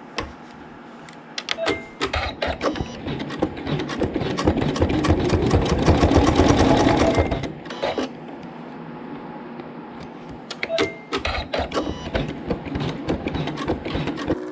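Computerised embroidery machine stitching a satin stitch, its needle running in a fast, even rhythm. It runs in two stretches: from about a second and a half in to about seven and a half seconds, loudest in the middle, then, after a quieter gap, again from about ten and a half seconds until just before the end.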